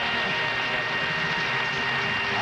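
Studio audience applauding steadily after a puzzle is solved.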